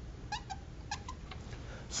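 Felt-tip marker squeaking on a whiteboard as the number 400 is written: a few short, high squeaks in quick succession.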